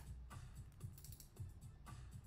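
Faint computer keyboard typing and clicks, scattered and irregular, over quiet background music.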